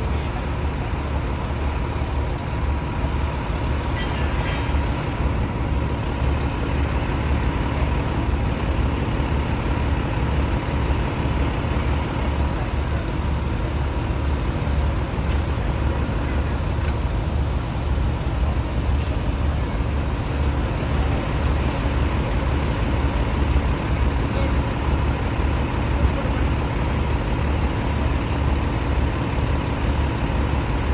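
Heavy diesel vehicles idling in street traffic: a steady low engine rumble with a steady whine held throughout.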